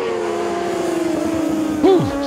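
600cc Supersport racing motorcycles running flat out, the engine note held high and falling slowly in pitch as the bikes go past.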